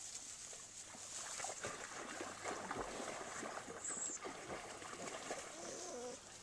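Dry grass and straw rustling and crackling irregularly as a puppy rolls and wriggles on its back in it, densest in the middle, with a brief high squeak about four seconds in.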